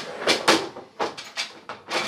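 Small items being set into a divider inside a desk drawer: a quick run of light knocks and clacks, about seven in two seconds.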